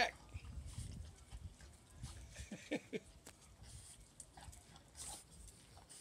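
Two small dogs, a chihuahua and a bulldog-type dog, scuffling as one mounts the other. The sound is faint, with a few short whines about two and a half seconds in.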